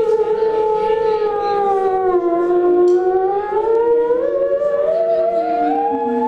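Live band music: a steady held drone under sliding, wavering pitched tones. One tone dips and then climbs steeply in the second half while another slides down near the end.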